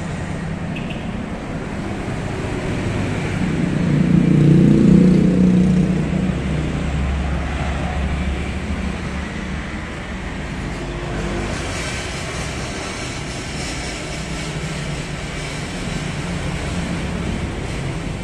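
Low rumble of road traffic, swelling louder for a couple of seconds about four seconds in.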